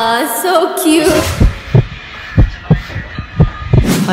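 Heartbeat sound effect: three pairs of deep thumps, lub-dub, about one pair a second, after a short pitched voice or music tone in the first second.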